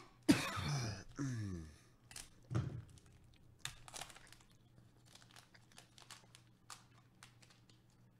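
Trading card pack's shiny wrapper being torn open and handled, giving faint scattered crinkles and crackles. Near the start, a short low vocal noise from a person, falling in pitch, is the loudest sound.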